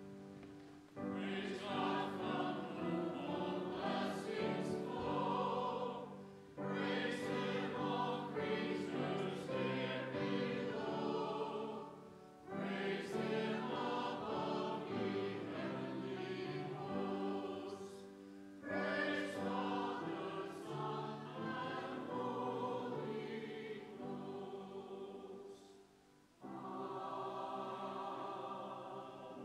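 A church congregation singing a hymn together with piano accompaniment, in phrases of about six seconds with short breaks for breath between them.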